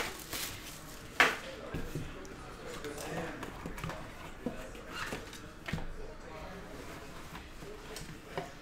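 Handling of a black cardboard card box: scattered light knocks and rustles as its lid is lifted off, the sharpest knock about a second in.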